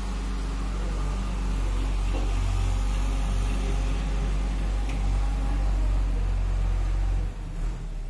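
A steady low mechanical hum and rumble that drops off sharply near the end.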